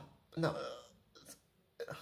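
A person's voice saying a single short word, "no", then a faint brief click about a second later.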